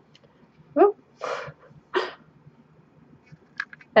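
A woman's brief wordless vocal sounds and breathy exhalations, a short hum-like sound, a breath, then another short voiced sound trailing into breath, followed by a few faint clicks near the end.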